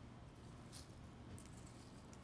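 Near silence, broken by a faint, brief rustle of small gravel stones being handled, once about three-quarters of a second in and again more softly later.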